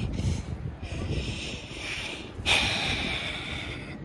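A person's breathy, hissing breaths over a low rumble of wind on the microphone, with one sudden louder breath about two and a half seconds in.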